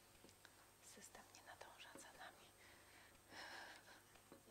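Near silence: a quiet room with faint whispered talk, including a brief hiss-like whisper near the end.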